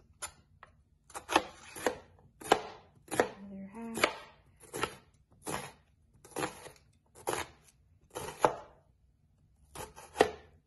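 Kitchen knife slicing an onion into thin slices on a bamboo cutting board: each stroke ends in a sharp knock of the blade on the wood, about two a second, with a pause of a second or so near the end.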